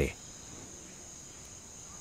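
Crickets chirring faintly and steadily.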